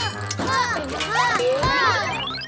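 Cartoon vocal sounds without words, sliding up and down in pitch, over a low steady musical hum, with a rising sweep near the end.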